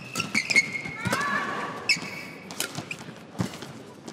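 Badminton rally: sharp racket strikes on a shuttlecock, about one every second or less, with short high squeaks of court shoes on the court mat as the players push off.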